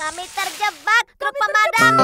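Children's cartoon song: a character's voice singing the lines "we're trapped… help us" over light backing music, with a short pause about halfway and the accompaniment filling out near the end.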